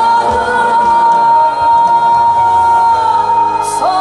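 A female trot singer belting one long high note, held steady for about three seconds over the song's backing music, then moving into the next phrase near the end.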